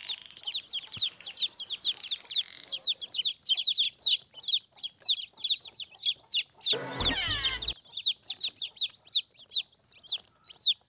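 Young chicks peeping without pause, many short high calls a second, each falling in pitch, played as a lure for monitor lizards. A loud, harsh burst cuts in for under a second about seven seconds in.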